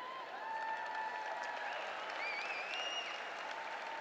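A large convention-hall audience applauding steadily, with a few faint calls rising over the clapping.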